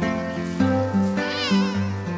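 A domestic cat meows once, a wavering call of under a second about halfway through, over background music of plucked strings.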